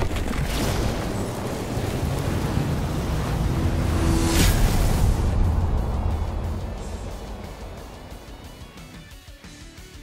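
Cinematic logo-intro soundtrack: a deep, noisy swell with a sharp whoosh-hit about four and a half seconds in, then fading away over the last few seconds.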